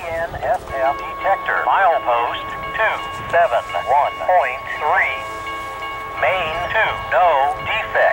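Automated railroad defect detector's synthesized voice announcement coming over a radio scanner, thin and band-limited, with a steady tone running under the words. It starts right at the beginning and runs on as the detector's report.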